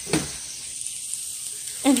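Faint, steady sizzle of chopped mixed vegetables (kale, carrots, broccoli) frying in a stainless steel skillet.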